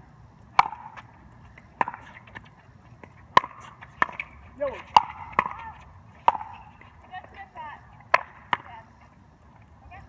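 Pickleball rally: paddles hitting the hollow plastic ball in a string of sharp pops, about nine at uneven spacing, the last two close together, with a brief shout midway.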